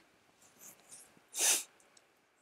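A man's short, sharp breath about one and a half seconds in, with a few faint small mouth sounds before it.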